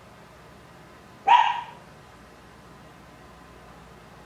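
A dog barking once, a single short bark about a second in.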